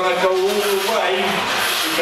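A voice speaking or calling out in drawn-out words over a rough, steady hiss.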